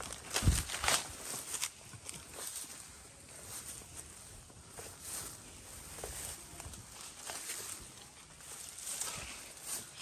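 Footsteps through tall, dense grass, with stems and leaves brushing and rustling in irregular strokes. There is a loud low thump about half a second in.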